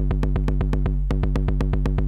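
Eurorack bass drum module played by a fast stream of gates from a GateStorm gate sequencer: rapid, even clicks over a sustained low boom. The gate pulse widths are being lengthened toward full, so the hits are starting to run together.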